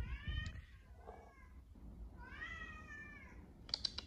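A pet cat meowing faintly, three calls: a short meow at the start, a weak one about a second in, and a longer, rising-then-falling meow in the middle.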